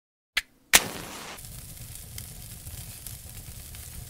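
Flame sound effect for an intro: two sharp bangs, the second louder, then a steady crackling hiss with a low rumble.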